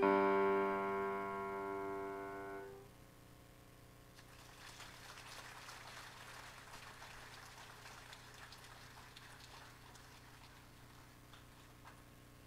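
Grand piano's final chord held and dying away over about three seconds, followed by faint scattered applause for several seconds.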